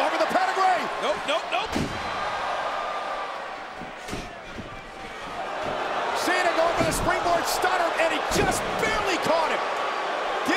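Large arena crowd cheering and shouting, with heavy thuds of wrestlers' bodies and kicks landing in a wrestling ring. One thud comes about two seconds in and two more come near the end.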